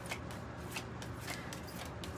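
A deck of cards being shuffled by hand: soft, irregular flicks and slaps of card edges, a few each second.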